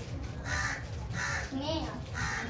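A crow cawing: two short, harsh caws about half a second apart, part of a repeated series.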